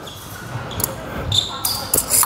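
Fencers' footwork thumping on the floor, with sharp metallic clicks of blades meeting about a second in and again near the end, in a large hall.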